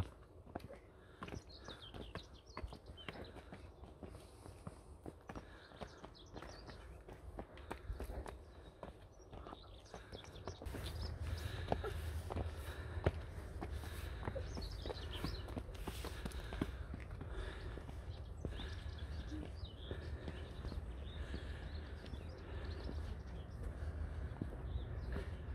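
Footsteps on stone steps and cobblestones, a run of short scuffs and taps at a walking pace. A steady low rumble joins them about ten seconds in.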